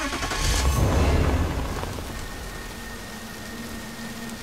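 Heavy rain falling steadily, with a deep rumble that swells about half a second in and fades away by about two seconds.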